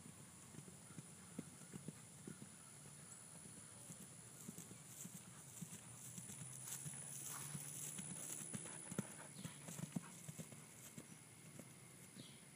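Hoofbeats of a thoroughbred cantering on grass, a run of soft thuds that grow louder as the horse passes close, loudest about eight to ten seconds in, then fading as it moves away.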